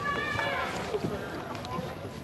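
Footsteps on a wooden boardwalk, a few light knocks, under people talking in the background.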